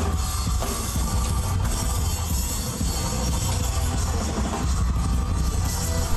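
Live rock band music from a concert stage: a drum kit with a heavy bass drum, bass and electric guitar playing steadily.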